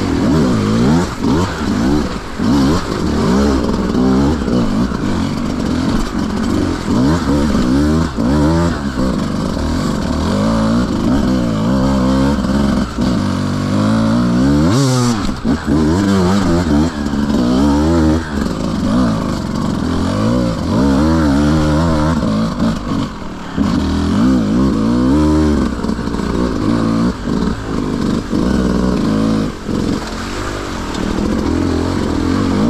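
Beta 200 RR two-stroke enduro motorcycle engine being ridden hard off-road, its revs rising and falling over and over as the throttle is worked. A brief hiss stands out about halfway through.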